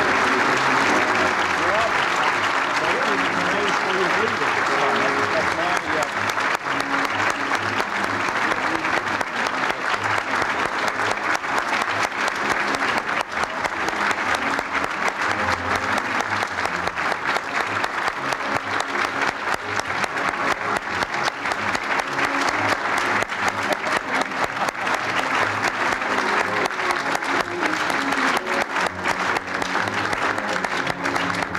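A large audience applauding steadily, with music playing under the clapping and voices in the crowd.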